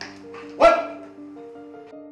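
A man shouting a name once, loud and short, about half a second in, over soft background music with held notes.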